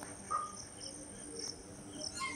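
Insects chirping: a steady high-pitched trill with a run of repeated short chirps above it. One short whistle-like note comes about a third of a second in.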